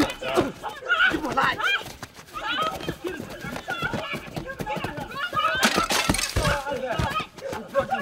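Several men shouting and yelling over one another in a scuffle, with a brief noisy crash about six seconds in.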